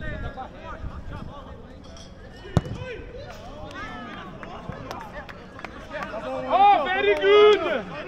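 Football players shouting calls across the pitch: scattered voices, then loud, high shouts for about a second and a half near the end. A single sharp thud about two and a half seconds in.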